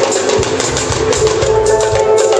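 Live band playing an instrumental funk jam: drum kit, electric bass, electric guitar and keyboard with sustained chords, with a percussionist on timbales.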